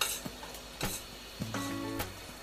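A utensil stirring ground pork in a frying pan, knocking against the pan twice in the first second. A steady held tone comes in near the end.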